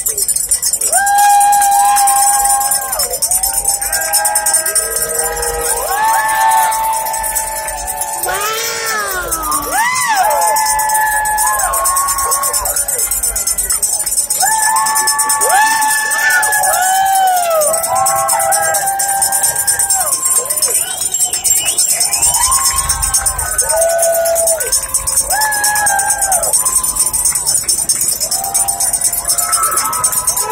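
Crowd of spectators cheering and whooping continuously, many voices overlapping in long held and swooping calls.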